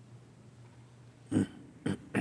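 Two short, loud coughs about half a second apart, near the end, over quiet room tone with a faint steady hum.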